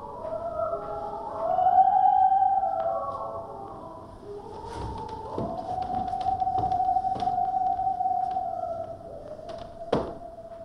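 Music: a single high melodic line of gliding notes, loudest about two seconds in, then one long held note.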